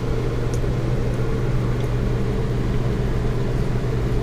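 A steady, low mechanical hum of constant pitch, as from a running motor or machine, unchanging throughout.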